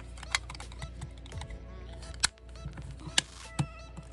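Sharp plastic clicks and taps as the cover of a small clear plastic battery box is pressed back into place, four distinct clicks spread irregularly across the few seconds.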